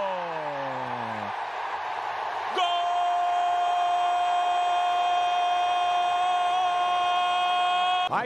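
Stadium crowd noise as a goal goes in, with a voice sliding down in pitch in the first second. From about two and a half seconds in, the Portuguese-language TV commentator holds a long goal shout on one steady pitch.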